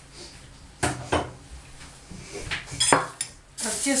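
A few sharp clinks and knocks of a bowl and metal spoon being moved and set down on a table, the loudest about three seconds in.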